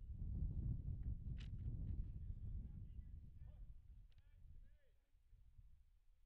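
Faint outdoor ballfield ambience: a low rumble that fades away over the second half, with faint distant voices.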